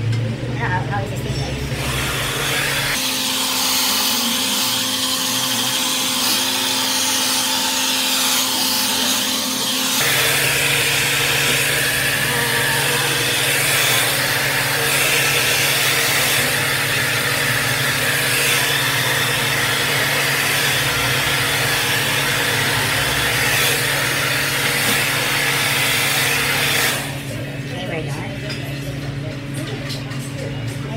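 Handheld hair dryer blowing: a loud, steady rush of air over a motor hum, switched on about a second in and cut off a few seconds before the end. The low hum drops away between about three and ten seconds in, then comes back.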